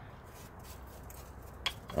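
A chip brush sweeping softly over the lathe's chuck, workpiece and tool post, over a faint low steady hum, with one light click near the end.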